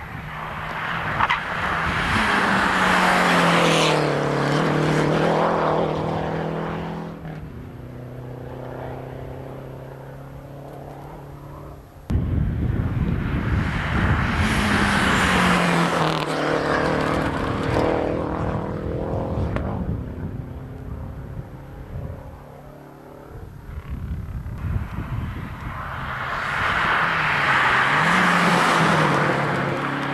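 Rally cars, among them Renault 5s, passing one at a time at speed on a special stage, engines at high revs. Three passes: each engine note swells, then drops in pitch as the car goes by. The second begins abruptly, as at an edit.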